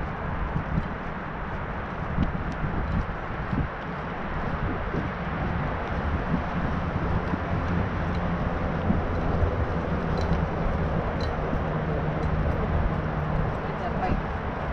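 Steady rushing noise of a bicycle ride: wind on the camera microphone and tyres rolling on an asphalt path.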